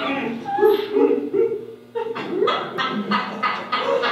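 A man's voice making short animal-like grunts and calls, then, about halfway through, a rapid run of short pulses at about four a second.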